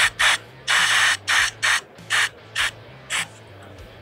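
Rotary 247D tire changer's pneumatic assist arm being positioned, its air valves letting out a series of short hisses of air, about nine, shorter and more spaced out toward the end.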